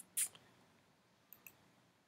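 Faint computer mouse clicks over quiet room noise: a sharp click at the start, a short hiss just after it, and two soft clicks about a second and a half in.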